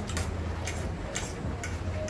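A person eating from a plate with a spoon: short sharp clicks about every half second, over a steady low hum.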